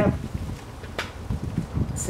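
Handling noise as an electric drill is picked up: low rustling and soft knocks, with one sharp click about a second in.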